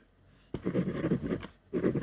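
Ballpoint pen writing on paper on a desk: a quiet moment, then about a second of quick scratching strokes, a brief pause, and the writing starting again near the end.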